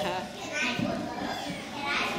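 A group of young children chattering at once, many small voices overlapping into an indistinct babble.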